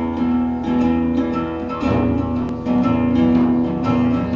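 Acoustic guitar being strummed, chords held and re-struck, changing chord about two seconds in.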